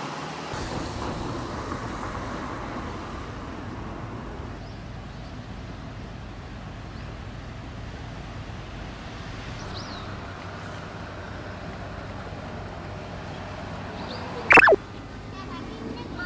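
Steady outdoor street background noise, like distant traffic, with a faint short chirp about ten seconds in. Near the end, one sudden loud, brief sound that falls sharply in pitch stands well above everything else.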